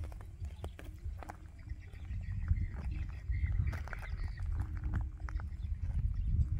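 Wind buffeting the microphone in an uneven low rumble, with faint music playing in the distance.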